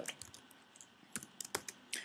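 Typing on a computer keyboard: a few faint, irregular keystrokes.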